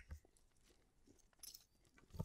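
Near silence, with a few faint crackles, the clearest about a second and a half in, as hands handle a freshly peeled salted dried roach (taranka).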